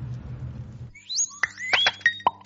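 A low, steady engine rumble cuts off suddenly about a second in. A comic musical bridge takes over, with quick rising whistle-like glides and short bright notes.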